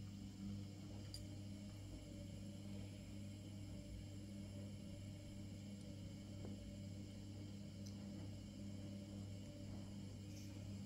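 A faint, steady low hum with a few soft clicks.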